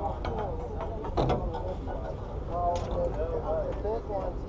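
Clicks and knocks of a fishing reel and tackle as a fish is reeled up to the boat, over a steady low rumble, with indistinct voices of people nearby partway through.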